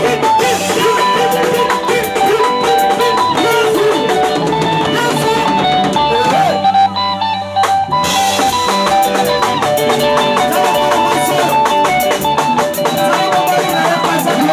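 Congolese-style band music: a lead guitar plays quick melodic lines over a drum kit and bass. The drums drop out for about a second past the middle, then come back in.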